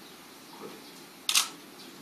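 A single camera shutter click about a second and a half in, short and sharp against quiet room tone.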